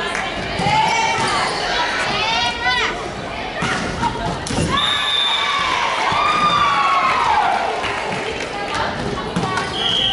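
Volleyball players calling out to each other in a large, echoing sports hall, with a ball thudding on the wooden court floor.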